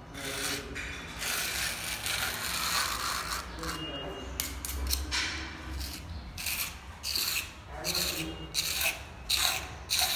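Putty knife scraping wet gypsum plaster along the joint between a gypsum cornice strip and the ceiling, in repeated rasping strokes. The strokes are long in the first half and shorter and more separate near the end.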